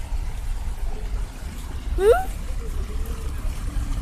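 A short rising vocal sound from a person about halfway through, with fainter voice traces after it, over a steady low outdoor rumble.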